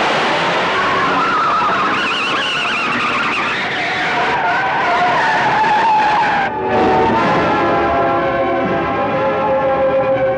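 Car chase sound effects: cars speeding with tyres screeching in wavering squeals. About six and a half seconds in there is a sudden break, and steadier held tones follow.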